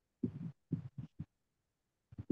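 Faint, muffled speech in a few short bursts in the first second and a half, then stopping.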